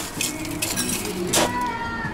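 Ice cubes clinking against a stemmed glass as it is filled from the bar's ice well to chill it: a few sharp clinks, the loudest about a second and a half in.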